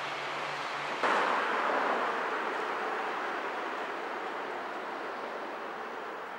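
Street traffic noise: a steady rush of passing vehicles that jumps louder about a second in, then slowly fades.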